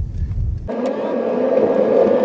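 Inside a moving car: low cabin rumble, which about two-thirds of a second in switches abruptly to a steady whooshing noise with no deep rumble under it.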